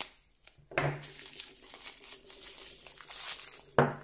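Clear plastic wrapping crinkling and rustling as it is pulled off a pack of battery cells by hand. It starts suddenly about a second in and ends with one sharp, loud crackle of plastic near the end.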